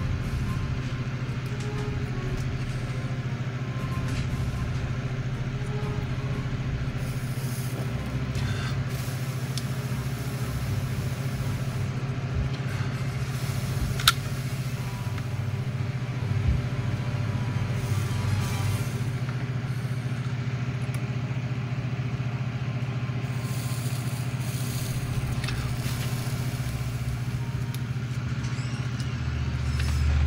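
A steady low electrical hum, with a sharp click about fourteen seconds in and faint handling scrapes and rustles.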